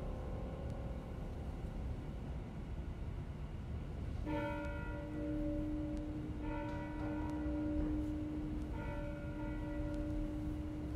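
A church bell tolling three times, about two seconds apart, beginning about four seconds in; each stroke rings on into the next, over a low steady rumble.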